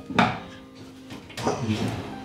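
Two short sharp knocks or scrapes of hand work on wiring at the dashboard, one just after the start and one past the middle, over quiet background guitar music.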